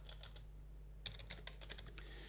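Faint computer keyboard typing: a few light keystrokes, then a quick run of keystrokes about a second in.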